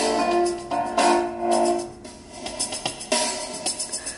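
A short jazz sample played through a laptop's built-in speakers, mostly piano chords with new chords struck about every second.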